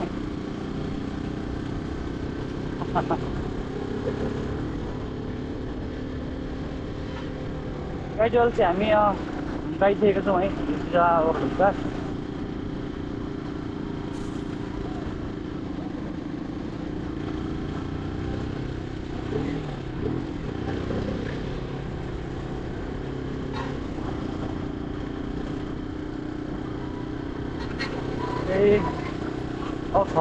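Motorcycle engine running steadily at cruising speed, with road and wind noise, heard from the rider's seat. A voice speaks in a few short bursts, loudest about a third of the way in.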